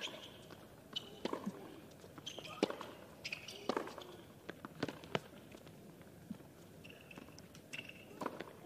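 Tennis rally on a hard court: sharp racquet-on-ball strikes about once a second, with short squeaks of the players' shoes on the court between shots.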